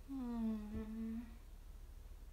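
A young woman humming one short note of about a second, dipping slightly in pitch at its start and then held level, with a faint click partway through.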